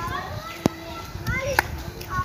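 High-pitched voices talking, with a single sharp click a little past half a second in.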